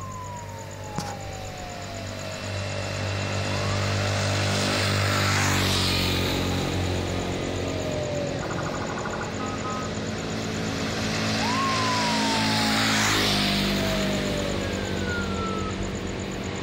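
Senken electronic police siren sounding a wail: a tone that rises quickly and then falls slowly over about four seconds, cycling repeatedly, with a brief pulsed burst about eight seconds in. Vehicle engine and tyre noise swells twice, loudest about five and thirteen seconds in.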